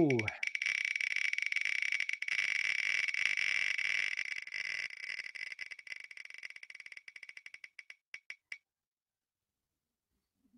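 Spinning-wheel picker app's ticking sound: a fast run of clicks that slows and fades as the wheel coasts to a stop, the last few ticks spaced out and ending about eight and a half seconds in.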